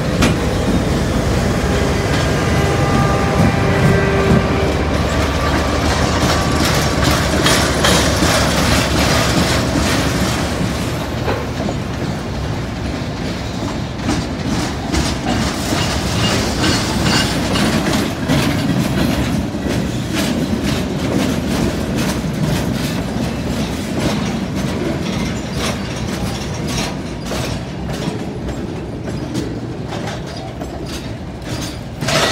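CSX freight train accelerating through a grade crossing: the locomotives pass first, then the freight cars roll by with their wheels clicking and clattering over the rail joints.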